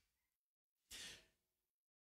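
Near silence, broken once about a second in by a man's short breath into the microphone.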